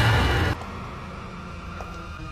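Horror-film sound design: a loud noise hit that cuts off sharply about half a second in, then a low, dark rumbling drone with faint sustained tones.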